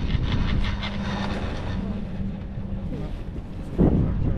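Doppelmayr detachable chairlift passing a lift tower: the grip and haul rope running over the tower's sheave wheels. It gives a rapid clicking rattle for the first couple of seconds, with a low steady hum under it, and wind on the microphone. A brief loud rush comes near the end.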